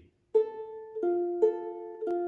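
Ukulele picked one string at a time in a practice pattern over a held F chord, alternating the open A string with an F note on the string above it. The notes start about a third of a second in and go higher, lower, higher, lower, each left to ring, in an uneven rhythm.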